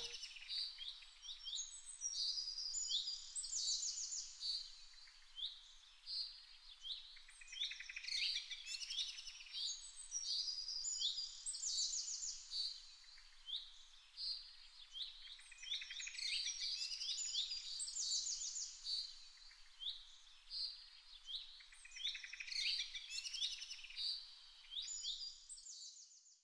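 Birdsong: several small birds chirping and trilling in a dense, overlapping chorus of short high calls that swells and thins in waves.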